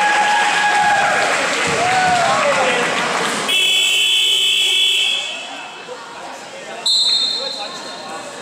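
Sneakers squeaking on the gym floor over crowd voices, then about three and a half seconds in a gym scoreboard buzzer sounds for about a second and a half. Near the end a short, shrill referee's whistle blows.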